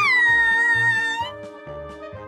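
A high-pitched voice sweeps up into one long note, holds it for about a second and fades. Underneath runs cheerful background music with a steady beat.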